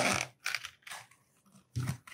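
Zipper of a nylon-covered hard-shell sunglasses case being pulled open around the case in a few short strokes.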